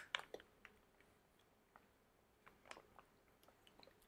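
Faint wet mouth sounds of jelly drink being sucked from a spouted pouch and chewed: a few soft clicks and squishes just after the start and a couple more midway, otherwise near silence.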